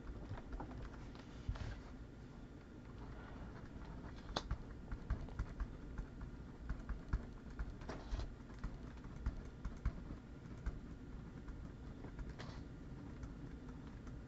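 Faint, irregular clicks and taps of typing on a computer keyboard, with a few sharper clicks standing out now and then.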